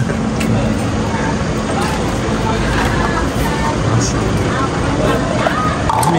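A steady motor running close by, loud and even throughout, with faint voices behind it.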